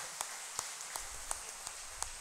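A few scattered hand claps from a congregation, sharp and irregular, over a faint hiss of room noise.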